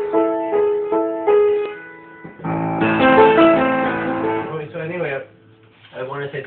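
Piano playing: a few notes and chords struck about every half second, then a louder, fuller passage of many notes from about two and a half seconds in that dies down near the end.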